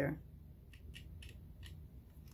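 Faint short ticks, about six within a second, of a craft blade slicing a thin piece off a polymer clay cane on a cutting mat.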